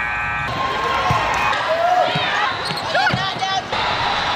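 Basketball bouncing on a hardwood gym floor as a player dribbles, with sneakers squeaking on the court and voices in the gym, mostly in the second half. A short steady tone sounds right at the start.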